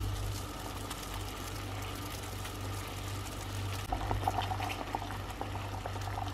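Water at a rolling boil in a stainless steel pot, bubbling steadily around baby pacifiers and bottle parts being boiled to sterilize them, with a few light clicks in the second half.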